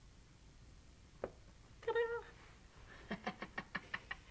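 A short high-pitched vocal sound about halfway through, then a quick chuckle of several rapid short pulses near the end; a single faint click comes just before the vocal sound.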